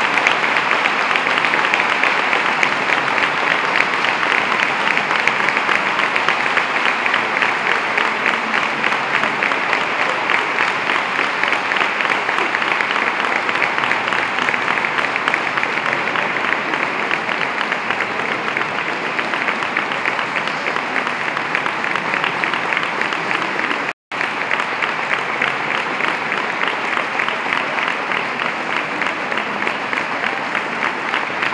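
Audience applauding at the end of a choral piece: a dense, steady clapping that eases off slightly over time, with the sound cutting out for an instant about three-quarters of the way through.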